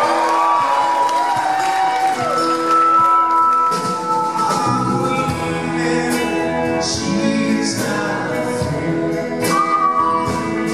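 Live band music: a male singer sings a slow ballad over acoustic guitar and band, with long held notes.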